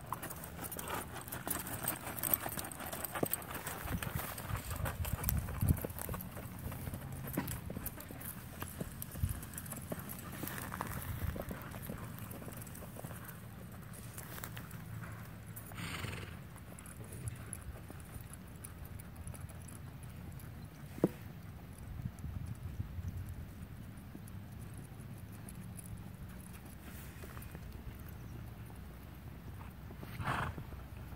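A horse loping on hard, dry arena dirt: irregular thudding hoofbeats, loudest in the first few seconds and fainter as the horse moves off around the arena. One sharp knock stands out about two-thirds of the way through.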